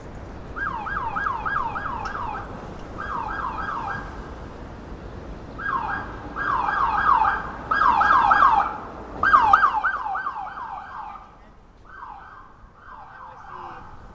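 Emergency vehicle siren in a fast yelp, its pitch sweeping rapidly about five times a second in repeated runs with brief breaks. It is loudest a little past the middle, then fades away in the last few seconds as the vehicle moves off.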